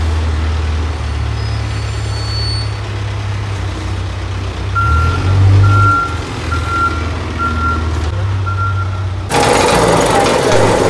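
Heavy diesel construction machinery runs with a steady low rumble. About halfway in, a reversing alarm sounds about six evenly spaced high beeps. Near the end a much louder rattling machine starts up suddenly, fitting a walk-behind vibratory asphalt roller.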